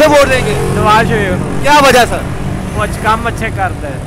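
Men's voices talking over a steady low hum of road traffic.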